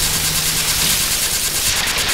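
Harsh industrial electronic noise played live: a dense, crackling wall of distorted noise over a low hum, breaking near the end into a fast stuttering high-pitched pulse of about a dozen strokes a second.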